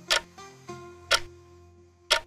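Quiz countdown-timer clock-tick sound effect: two sharp ticks a second apart, over soft background music notes that fade away.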